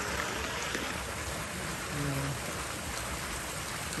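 Steady rushing hiss of running water from a garden stream.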